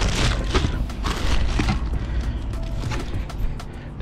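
Clear plastic wrapping around a new cold air intake pipe crinkling as it is handled, in a few bursts over the first second and a half, then lighter rustles. Underneath runs a steady low rumble of wind on the microphone.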